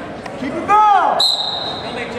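A referee's whistle blown in a gym, one sharp, steady high blast held for nearly a second, starting a little past the middle and stopping the wrestling. Just before it comes a loud shout.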